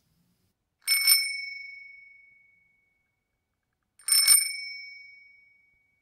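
A small metal bell rung twice, about three seconds apart, each time as a quick double strike whose bright, high ring fades over about a second and a half, with dead silence around it.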